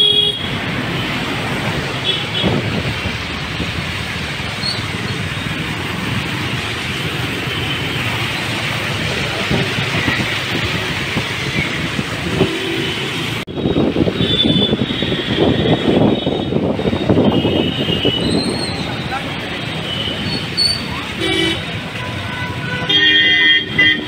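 Scooter wheels cutting through floodwater on a flooded road, a steady rush of splashing water and wind. After a sudden change about halfway, street traffic with repeated short vehicle horn toots.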